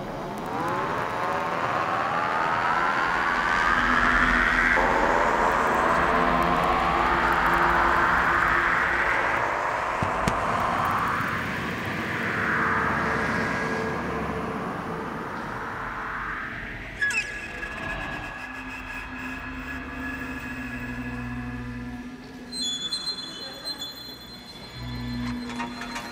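Dark ambient electronic music: dense clusters of slowly rising, sliding tones over a low drone, swelling twice in the first half. Later the glides give way to held low notes and, from about two thirds in, high sustained tones.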